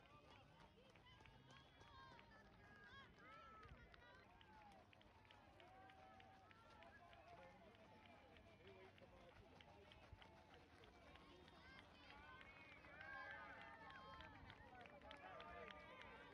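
Faint, overlapping voices of spectators calling and chattering, a little louder about three-quarters of the way through, with the soft footfalls of runners on a dirt-and-gravel course.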